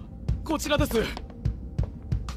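Anime episode soundtrack: a character's voice speaking about half a second in, over background music with a low, evenly repeating beat like a heartbeat.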